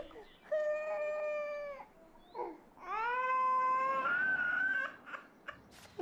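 Stovetop kettle whistling in long held notes that rise in pitch as each begins. The second note jumps to a higher pitch part way through.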